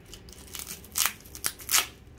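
Plastic cling-film wrapping on a jar being slit and torn open with a small knife: a few short, sharp crinkling rips.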